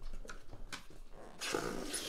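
Cardboard shipping case being opened and handled: a few scattered knocks and taps, then, about a second and a half in, a longer scraping rustle of cardboard.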